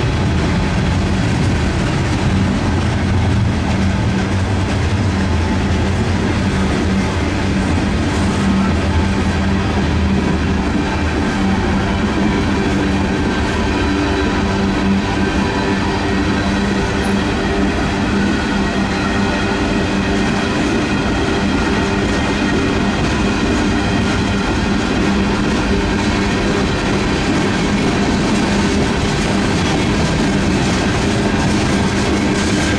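Freight train of covered hopper and tank cars rolling past close by: steel wheels on rail, a loud steady run with no break.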